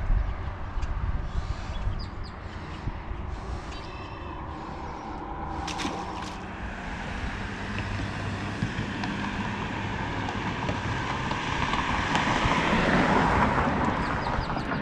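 Road traffic noise: a steady rush that swells louder near the end, as a vehicle passes.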